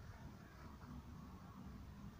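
Near silence: a faint low rumble of outdoor background, with no call from the bird.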